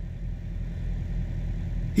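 Truck engine idling, a steady low hum heard from inside the cab.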